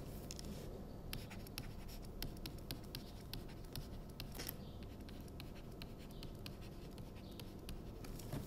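Stylus writing on a tablet screen: a faint run of quick taps and short scratches as an equation is written out, starting about a second in.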